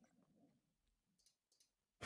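Near silence: room tone, with a few very faint clicks in the second half.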